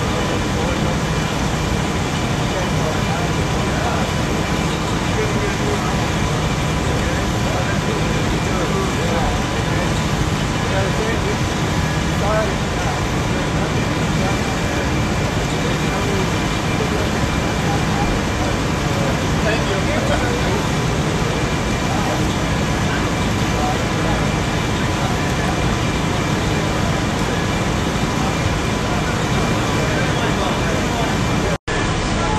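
Fire engine running steadily: a loud, constant drone with a couple of faint steady whining tones.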